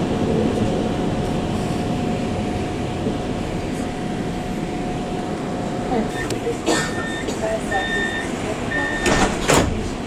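Inside a moving low-floor electric tram: a steady rumble from wheels and track with a steady whine from the drive. Near the end come three short electronic beeps about a second apart, with a few clattering knocks around them.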